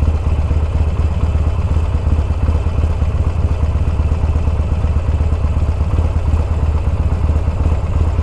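Cruiser motorcycle engine idling steadily while stopped, a low, even pulsing beat with no revving.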